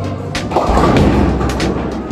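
Bowling ball rolling down a lane after release, a low rumble that grows stronger about half a second in, over background music.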